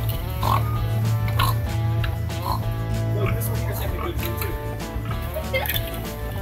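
Pigs grunting in short separate grunts over steady background music.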